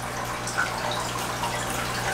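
Aquarium water trickling steadily, over a low steady hum.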